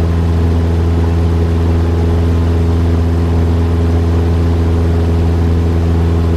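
Cessna 172SP's four-cylinder Lycoming engine and propeller at climb power just after liftoff: a loud, steady drone with an unchanging pitch.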